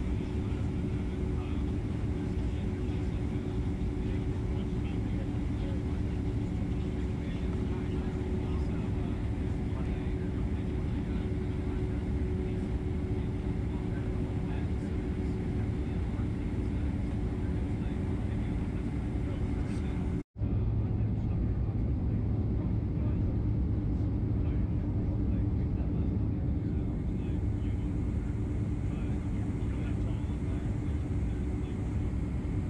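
Boeing 767 cabin noise while taxiing: the steady rumble of its jet engines at low thrust, with a held hum, heard from inside the cabin. About two-thirds of the way through, the sound breaks off for an instant and comes back slightly louder.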